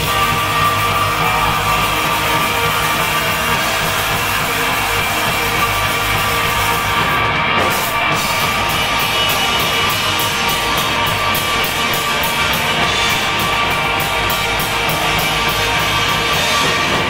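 Live rock band playing loud: distorted electric guitars, bass and drums in one continuous dense wall of sound. About halfway through, the drums settle into a fast, even run of hits.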